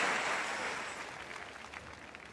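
Audience applause dying away, thinning to a few scattered claps near the end.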